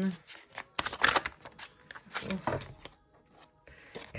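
Tarot cards being shuffled and handled: a run of irregular papery flicks and slaps, pausing briefly near the end.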